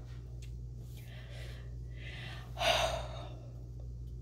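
A ceiling fan running with a steady low hum. A woman gives one short breathy exhale, like a sigh or a soft laugh, near three seconds in.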